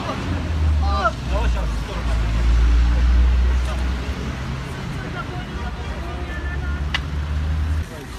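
Low rumble of road traffic that swells from about two to four seconds in, with bystanders murmuring and a single sharp click about seven seconds in.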